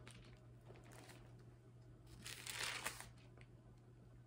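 Bible pages being turned: a faint paper rustle lasting under a second, a little past halfway, ending in a small click, over a low steady room hum.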